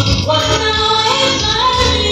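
A woman singing the lead of a Swahili gospel song into a microphone, amplified through a PA, over a live band accompaniment.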